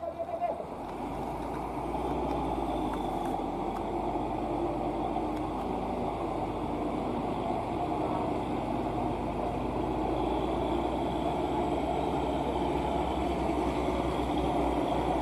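Heavy diesel truck engines labouring up a steep hairpin climb: a steady low rumble that grows louder as a loaded truck comes round the bend.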